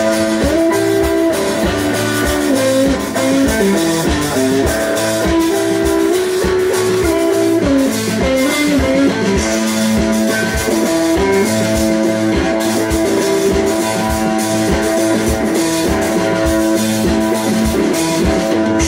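Live blues-rock band playing an instrumental passage with no singing: electric guitar and bass lines over a drum kit keeping a steady beat.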